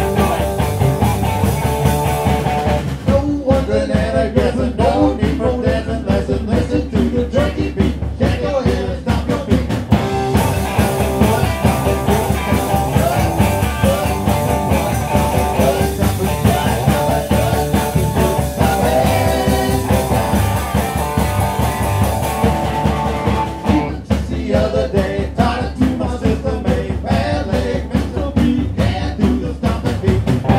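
Garage rock band playing live, with electric guitars, bass and drums and a harmonica played into a vocal microphone holding long notes over the beat.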